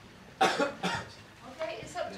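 A person coughing: two sharp coughs about half a second apart, the first the loudest, followed by a voice starting up faintly near the end.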